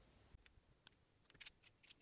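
Near silence: room tone with a few faint, short clicks from hands handling a wire and small parts.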